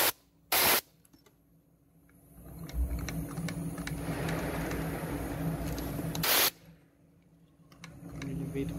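Compressed-air filter-regulator being turned down, venting air in two short loud hisses, one just after the start and one about six seconds in, with a softer steady hiss between them, as the line pressure is lowered from about seven bars toward four.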